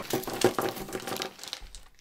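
Plastic snack bag crinkling as foil- and plastic-wrapped candies are tipped out of it onto a wooden table, with quick little clicks of the candies landing; the rustle thins out and fades near the end.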